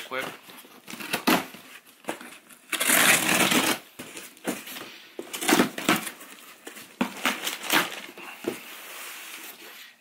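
A cardboard shipping box being cut open and its flaps pulled back: packing tape and cardboard cut with a long rasping stroke about three seconds in and a shorter one near six seconds, between scattered knocks and scrapes of cardboard.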